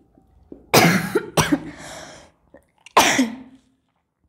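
A woman coughing three times in quick, harsh bursts, the first two close together and the third about a second and a half later.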